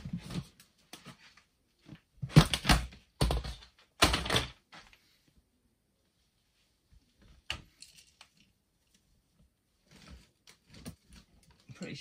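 Plastic storage boxes handled and set down: three loud knocks about two to four seconds in, then a single sharp click a few seconds later and light clicking and rattling near the end.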